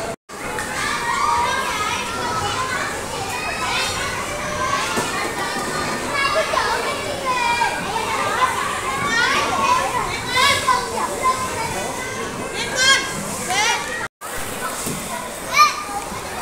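Many children's voices chattering and calling out over one another, with short high-pitched squeals now and then, the loudest near the end. The sound drops out completely for an instant twice, near the start and about two seconds before the end.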